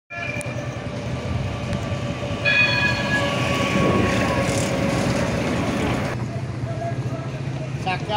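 A Translohr rubber-tyred tram passing close by: its warning horn sounds at the start and again, louder, about two and a half seconds in, over a steady whine and a rush of running noise that peaks as it goes by around four seconds in and drops off suddenly about six seconds in.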